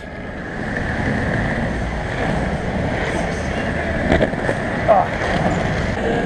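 Skateboard wheels rolling over asphalt, a steady rough rumble that builds over the first second and then holds, with wind on the microphone.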